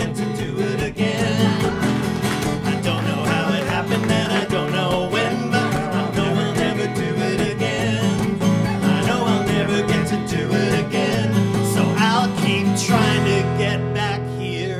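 Live acoustic song: two acoustic guitars strumming while several men sing together. About thirteen seconds in, the music settles into a long held chord.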